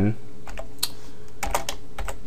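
Computer keyboard keystrokes while code is typed: a few separate clicks, then several in quick succession about one and a half seconds in, over a steady low hum.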